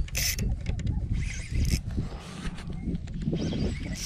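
Shimano Vanford spinning reel being cranked against a hooked redfish, its gears and handle giving irregular clicks and whirs, with a low rumble of wind on the microphone.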